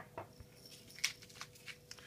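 Seasoning sprinkled by hand onto thin potato slices on parchment paper: a few faint, scattered ticks, the clearest about a second in.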